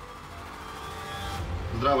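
Intro transition sound effect: a whoosh over a low rumble, building for about a second and a half and then cutting off. A man begins speaking at the very end.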